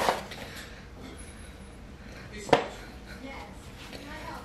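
Bread dough being kneaded by hand on a floured wooden board: quiet pressing and handling, with one sharp thump about two and a half seconds in.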